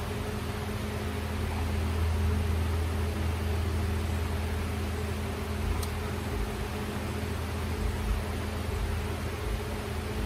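Electric fan running steadily: a constant low hum under an even rush of air.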